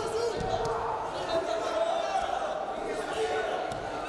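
Indoor arena sound of a wrestling bout: voices calling out and talking in a large hall, with a few dull thuds, one near the start and one near the end.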